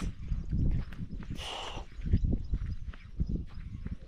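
Footsteps on dry, bare soil as the person carrying the camera walks, heard as irregular low thumps, with a brief hissing rustle about one and a half seconds in.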